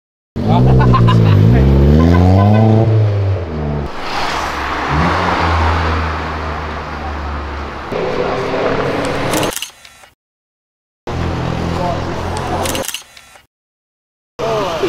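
A car engine revving, its pitch rising and falling over a couple of seconds, then running on at a steady pitch under a rushing noise. The sound cuts off suddenly about ten seconds in and comes back briefly.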